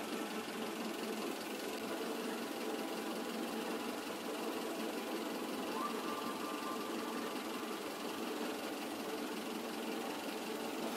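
Steady mechanical running noise, like an engine or motor idling, with a faint high whine that joins about six seconds in.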